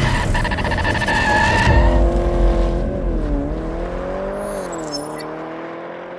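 Car sound effects for a logo intro. A loud burst of engine and tyre noise with a high squealing tone lasts about two seconds, then an engine note dips and rises in pitch and fades out.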